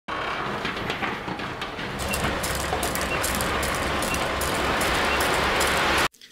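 Demolition of a large concrete and steel structure: a heavy excavator working while broken concrete and debris crash down, a dense crackling rumble that grows louder about two seconds in and cuts off sharply at the end.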